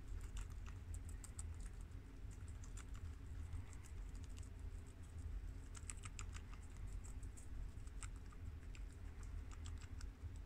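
Guinea pigs chewing crisp romaine lettuce: fast, irregular crunching clicks, thickest about six seconds in, over a low steady hum.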